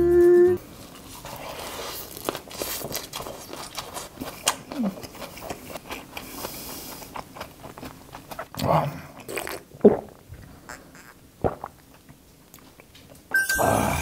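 Close-up chewing of a perilla-leaf wrap of raw ddak-saeu shrimp with pickled radish, with small wet mouth clicks and a couple of short voice sounds in between.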